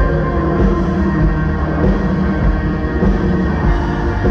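A worship band playing live, with electric and acoustic guitars over a strong, steady bass end.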